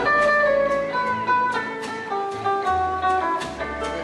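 Instrumental break from a live country band, led by an acoustic guitar picking a single-note melody of short held notes, with bass notes underneath.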